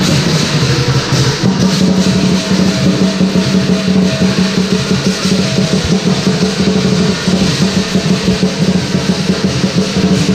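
Southern Chinese lion dance percussion: a large lion drum beaten in a fast, continuous rhythm, with clashing cymbals and a gong ringing over it.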